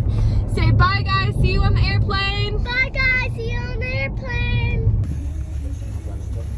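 A child singing a wavering tune in long held notes over the steady low rumble of road noise inside a moving car. The singing stops about five seconds in, leaving only the road rumble.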